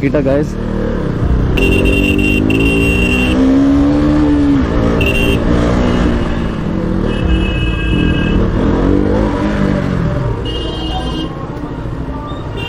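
KTM RC 200's single-cylinder engine running at low speed in traffic, its pitch rising and falling with the throttle. Several short, high-pitched beeps, like horns, come in over it.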